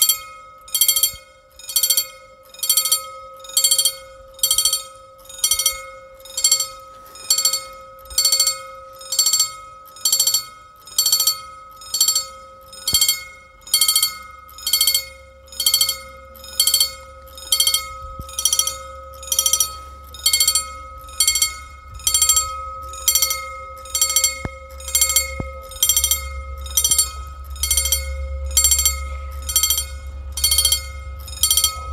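Mechanical level crossing bell (EFACEC) ringing steadily, about one strike a second, each strike ringing on, as the crossing warns of an approaching train. A low rumble grows through the second half, strongest near the end.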